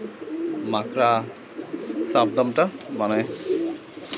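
Domestic pigeons cooing: a low, wavering murmur that runs under a man's voice.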